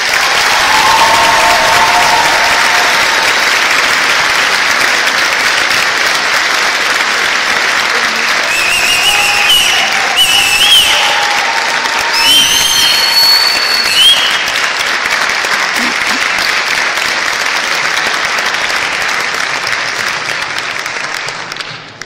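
Audience applause in a large hall, sustained and loud, with a few high gliding tones in the middle; it tapers off near the end.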